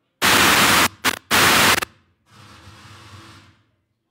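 Loud bursts of static from a wireless microphone hit by interference on its radio frequency: three sharp hisses within the first two seconds, the middle one brief, then a quieter stretch of hiss that cuts off.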